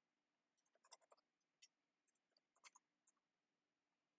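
Near silence with faint computer keyboard clicks in two short bursts, about a second in and near three seconds in.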